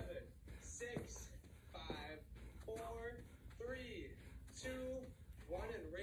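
A person's voice, speaking in short phrases with a few briefly held tones.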